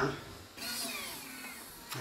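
Electric motor of the Trackbot's 24-inch arm whining for about a second as the lower arm moves, its pitch falling as it goes.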